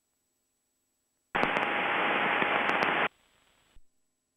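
A burst of static through the aircraft's headset audio: loud, even hiss that breaks in about a second in, cuts off abruptly under two seconds later, then trails as fainter hiss ending in a click, like a radio or intercom channel opening and closing.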